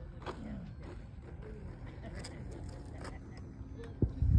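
Wind rumbling on the microphone, with faint distant voices.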